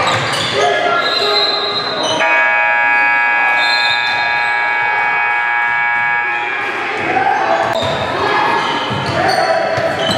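Gym scoreboard buzzer sounding one steady, held tone for about four and a half seconds, starting abruptly a couple of seconds in, with players' voices and sneaker noise in the hall.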